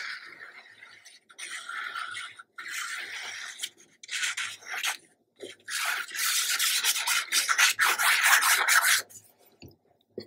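Plastic glue bottle's tip dragged across the back of a sheet of patterned paper as glue is laid on, in several short strokes and then one long, louder run from about six to nine seconds in.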